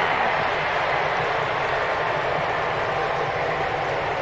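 Steady ballpark crowd noise, a continuous roar without distinct claps, as the crowd reacts to a grand slam home run.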